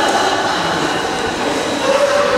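Indistinct murmur of many voices in a large hall, a dense, steady mix with no one voice standing out.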